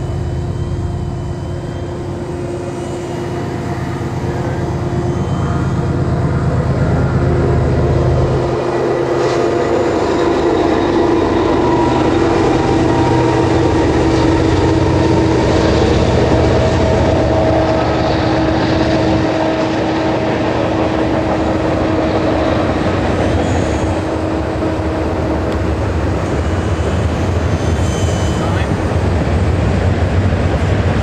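E-flite Blade mSR micro RC helicopter in flight, its motors and rotors giving a steady whine that shifts slightly in pitch as it manoeuvres, over a constant low rumble.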